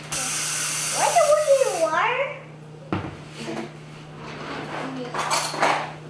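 Water pouring into a bowl of pancake mix, a steady hiss that starts suddenly and lasts about two seconds, with a child's voice over its second half. A shorter rush of the same kind comes near the end.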